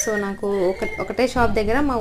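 A woman talking: only speech, with no other sound standing out.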